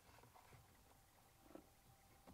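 Near silence: a few faint small clicks as needle-nose pliers work inside a plastic fuse-holder connector.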